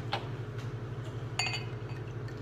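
Glassware clinking once about one and a half seconds in, with a brief ringing, over a steady low hum.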